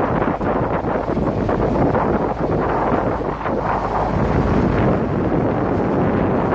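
Wind buffeting the microphone aboard a small boat under way at sea: a loud, steady, low rushing noise with no letup.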